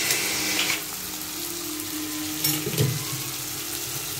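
Chopped tomato and masala frying in a pan, sizzling loudly for the first second and then settling to a softer sizzle, with a couple of light knocks partway through.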